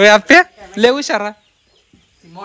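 A chicken calling loudly three times, two short calls and then a longer one, before the sound cuts off suddenly.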